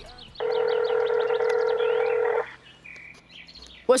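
Outgoing video-call ringing tone on a smartphone: a steady electronic tone held for about two seconds, then a short higher tone near three seconds in as the call connects.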